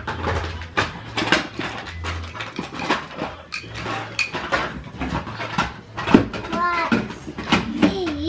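Wooden toy train cars and other toys clacking and knocking together in irregular clicks as they are handled and rummaged. A young child makes a few short vocal sounds in the second half.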